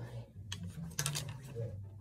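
A few light clicks and taps as an arrow is fitted onto a Bear Archery Limitless compound bow: the arrow is nocked on the string and set in the whisker biscuit rest. Clicks come near the start, about half a second in and in a quick cluster around one second.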